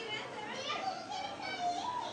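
Background voices of other people in a shop, faint and high, including a child's voice.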